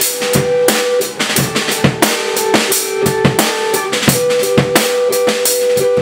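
Rock drum kit played in a busy, fast pattern of kick, snare and cymbal hits, over steady held droning tones in a loose, experimental jam.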